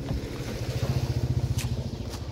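A motor vehicle engine running, heard as a low, rapid, even pulsing.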